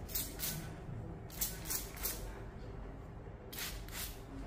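Trigger spray bottle misting the hair in about six short hissing squirts, several in quick succession.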